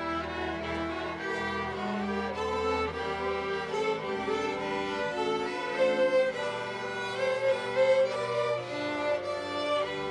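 School string orchestra of violins, violas and double bass playing a piece with bowed, held notes, a few louder accented notes coming about six and eight seconds in.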